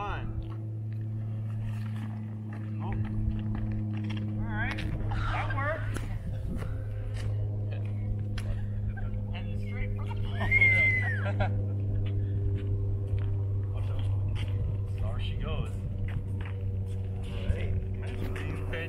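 A small group of people's voices calling out and exclaiming outdoors, with one high rising-and-falling call about ten seconds in, over a steady low hum.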